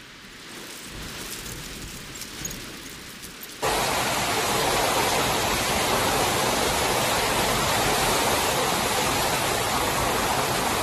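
Hail and heavy rain falling: a fainter, even hiss with scattered impacts for the first few seconds, then abruptly much louder and denser from about three and a half seconds in.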